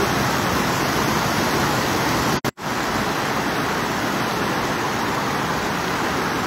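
Muddy floodwater rushing in a fast torrent over a road, a steady, even rush of water noise. It drops out for a split second about two and a half seconds in.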